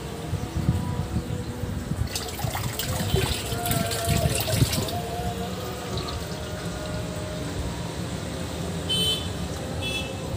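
Water from a hose pouring and splashing into a shallow concrete fish pond, busiest a couple of seconds in. A short high-pitched chirp comes near the end.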